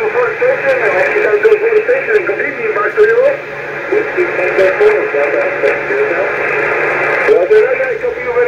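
A distant station's voice received in upper sideband on the 20-meter band by a Yaesu FT-991A transceiver and heard through its speaker. It is a very weak signal, and the speech sounds narrow and thin over a steady hiss.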